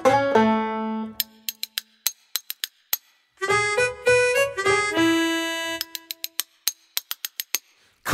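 Solo banjo picking two short phrases of plucked, ringing notes, the second starting a little before halfway. After each phrase comes a run of light, dry clicks from spoons.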